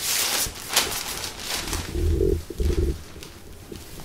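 Sterile paper drape crinkling and rustling as it is unfolded and laid out to extend the aseptic field. About two seconds in come two short, low, muffled sounds.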